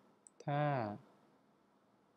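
A man's voice speaks one short word about half a second in, just after two faint short clicks. The rest is quiet room tone.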